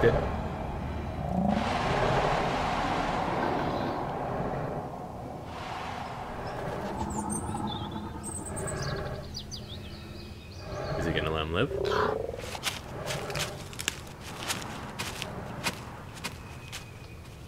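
Horror film soundtrack: creature noises over forest ambience with birds chirping. A run of sharp clicks comes near the end.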